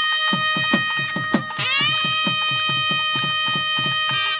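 Nadaswaram holding a long note over quick thavil drum strokes, about five a second; the note bends up about one and a half seconds in.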